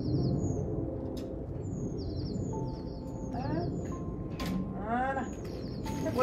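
A small bird singing a short two-note phrase, a high note then a lower one, repeated over and over at an even pace, over a steady low outdoor rumble.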